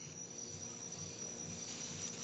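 Steady background hiss from an open video-call microphone, with a continuous high-pitched trill held on one note throughout.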